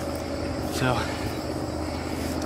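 A steady low background hum, with a single short spoken word about a second in.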